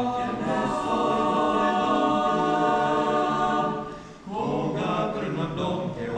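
Mixed choir singing a cappella: a long held chord that fades away about four seconds in, followed by a breath and a new phrase.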